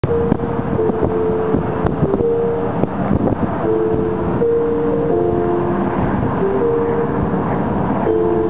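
Steady road and engine noise inside a moving car, with music playing over it, its notes changing every second or so.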